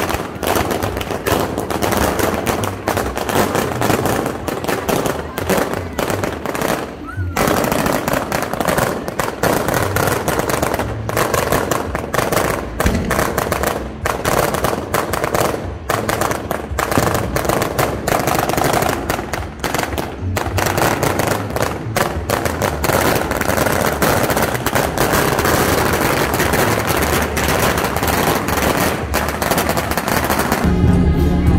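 A long string of firecrackers going off in rapid, continuous crackling volleys, briefly letting up a couple of times.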